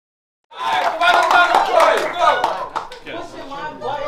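Silence for about half a second, then a crowd of voices talking and calling out over one another, with a few scattered claps.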